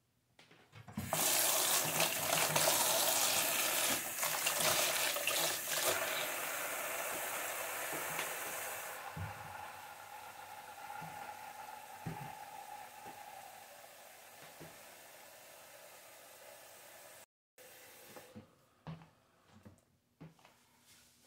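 Bathroom faucet running into a small metal tub in the sink, filling it with soapy, foaming bath water. The rush of water starts about a second in, is loudest for the first few seconds, then grows steadily quieter; a few small knocks near the end.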